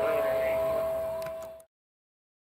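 Fire engine sirens: a siren sweeping up and down about twice a second over a steady high siren tone. The sound fades and cuts off about one and a half seconds in.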